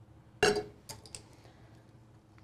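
A stainless-steel sublimation tumbler set down upright on a tabletop: one short clink with a brief ring about half a second in, followed by a few light clicks.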